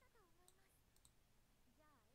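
Near silence: room tone, with a very faint falling voice-like tone near the start and a faint rising one near the end.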